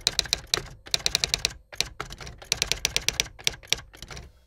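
Typewriter sound effect accompanying on-screen text: a rapid, uneven run of sharp key clicks, with a short break about one and a half seconds in.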